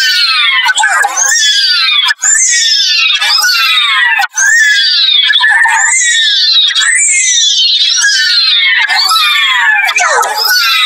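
Cartoon character voices saying "no", heavily pitch-shifted and distorted by audio effects into high, shrill calls that fall in pitch, repeating about once a second with two brief cut-outs.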